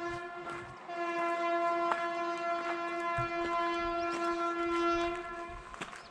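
A train horn sounding one long, steady note, getting louder about a second in and cutting off near the end.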